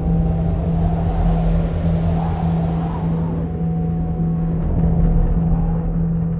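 Steady low rumble of a bus engine and road noise, heard from inside the moving bus.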